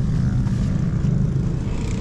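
Steady low rumble with no distinct events.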